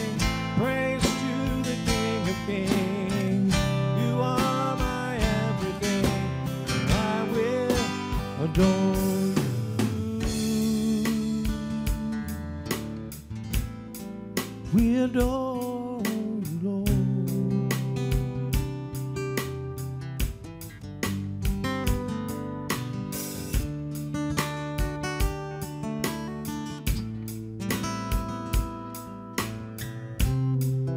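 A man singing a gospel song live to his own strummed acoustic guitar, keeping a steady strumming rhythm, with the guitar carrying on alone between sung lines.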